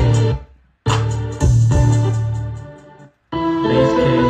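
A beat in progress playing back from the music software through studio monitors: sustained keyboard chords over deep bass. It cuts off abruptly just after the start and restarts about a second in. It fades out near three seconds, then starts again with busier keys.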